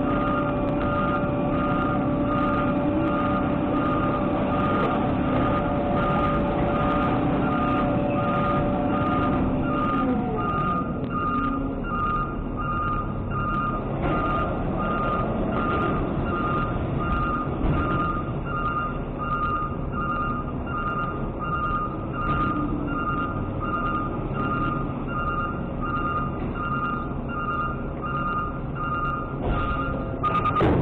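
Trash truck's backup alarm beeping steadily about once a second over the running diesel engine as the truck dumps its recycling load. A steady whine from the truck glides down and fades about a third of the way in, leaving the engine and the beeping.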